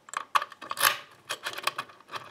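Metal key being worked into and turned in a DOM dimple-lock euro cylinder: a quick run of small metallic clicks and scrapes, the loudest scrape about a second in.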